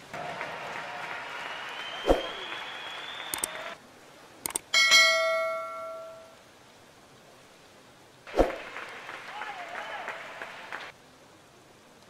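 Spectators applauding in a diving hall for the first few seconds. Then comes a couple of clicks and a bright bell ding from a subscribe-button animation, the loudest sound, ringing out and fading over about a second and a half. Applause-like crowd noise returns for a couple of seconds after that.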